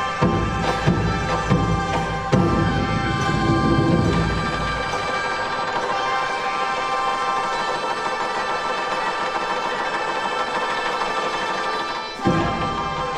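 A Chinese traditional orchestra playing. Percussion strokes sound over held wind and string tones for about the first four seconds, then a long sustained chord without percussion is held and cut off near the end.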